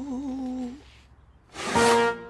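A woman humming a held, wavering sing-song note that fades out under a second in. After a short pause, a bright held musical chord comes in near the end.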